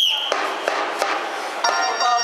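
A high whistle blast that cuts off just after the start, then a few sharp drum strokes, and keyboard-and-drum cheering music for a baseball fight song starting about one and a half seconds in.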